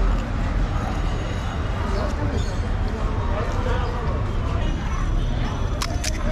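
Busy street ambience: indistinct background voices over a steady low rumble, with one short sharp click near the end.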